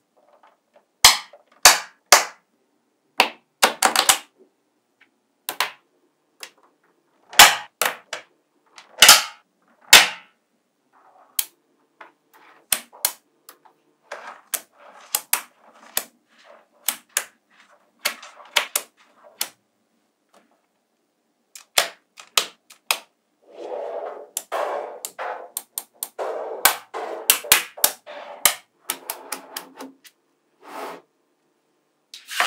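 Small magnetic balls snapping together with sharp metallic clicks as columns of balls are pressed onto a block, at irregular intervals. Near the end the clicks come thicker, with a rattling, rubbing clatter as the balls are pushed and settled into place.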